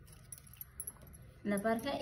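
Faint rustling and crackling of papery shallot skins being peeled by hand, with light clinking of metal bangles; a voice comes in about three-quarters of the way through.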